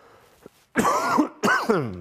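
A man coughing twice in quick succession, the first about three-quarters of a second in.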